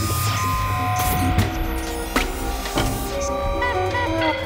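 Contemporary music for a 23-piece ensemble with electronics: a dense low rumble under several held tones, broken by a few sharp hits, with short gliding pitches near the end.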